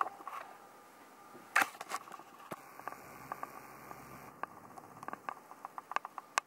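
Scattered clicks of a computer mouse and keyboard keys, with one sharper click about a second and a half in and a quick run of small clicks near the end.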